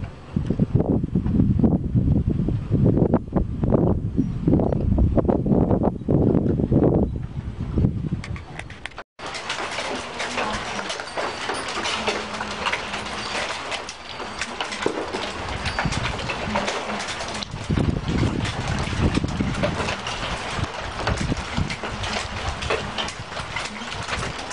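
Wind gusting over the microphone with rain starting, then, after a sudden cut about nine seconds in, a steady hiss of rain falling during a thunderstorm.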